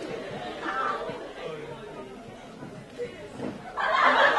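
Quiet, indistinct chatter of voices in a large hall, growing louder near the end.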